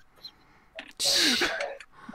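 A short, sharp breathy vocal burst from a man about a second in, after a near-quiet moment.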